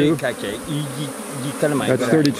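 Swarm of honeybees buzzing around an opened top-bar hive. Single bees passing close by make buzzes that rise and fall in pitch over the steady hum of the colony.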